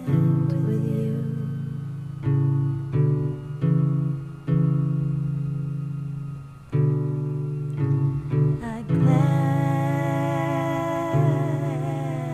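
Instrumental passage of a soft ballad: plucked guitar notes, each ringing and fading, over low bass notes. About nine seconds in, a held melody line with a wavering pitch comes in above them.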